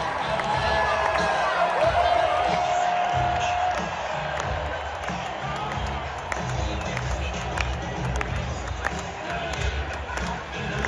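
Marching band music with a large stadium crowd talking and cheering underneath. A long note is held for about the first three seconds.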